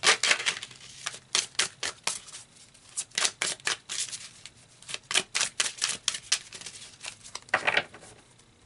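A deck of oracle cards being shuffled by hand: a quick, irregular run of card slaps and clicks, with a longer swish near the end as a card is drawn.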